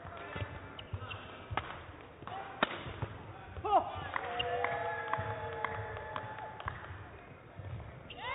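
Badminton rally: a string of sharp racket strikes on the shuttlecock, with shoes squeaking on the court floor, the longest squeaks coming from about four seconds in.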